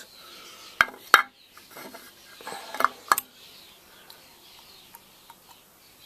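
Metal compressor parts being handled: the valve plate and head knock together in a few sharp clinks, one pair about a second in and another around three seconds in, with faint small ticks after.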